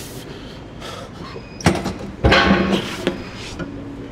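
Two heavy clanks a little over half a second apart, about halfway through, as a gym leg machine's weight is set down at the end of a hard set, followed by a short strained exhale from the exhausted lifter.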